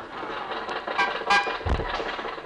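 Radio sound effect of an old car under way, with a couple of short toots about a second in and a low thump near the end, over the tail of studio audience laughter.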